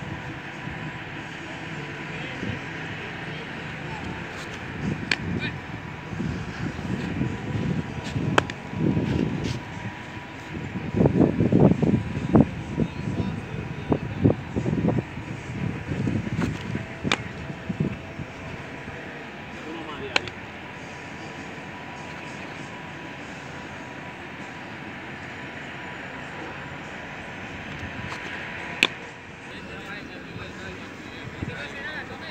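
Baseball smacking into leather gloves as pitches are thrown and caught: sharp single pops every few seconds, the loudest near the end, over faint background voices.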